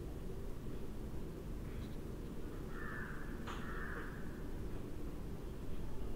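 Steady low background hum, with a harsh, rasping sound of about a second and a half, about three seconds in, and a sharp click in the middle of it.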